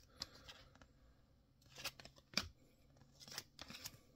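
Glossy Topps Widevision trading cards being handled and slid past one another as the top card is moved to the back of the stack, with a few faint, brief snaps of card edges, the clearest about two and a half seconds in and near the end.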